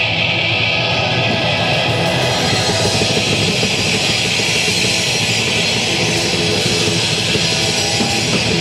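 Live rock band playing: electric guitars through Marshall amps, bass guitar and drum kit, loud and continuous, with the low end filling in about two seconds in.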